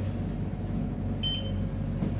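A single short electronic beep from a Schindler 3300 AP elevator's touch button panel, a little over a second in, over a steady low hum inside the lift car.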